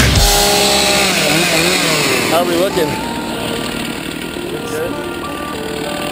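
Music cuts off about half a second in. After that a small engine runs steadily, its pitch shifting up and down in steps, with indistinct voices.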